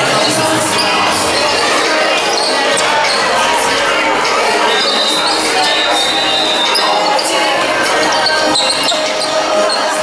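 Indoor basketball game in a large, echoing hall: a ball bouncing on the hard court among the voices of players and spectators talking and calling out.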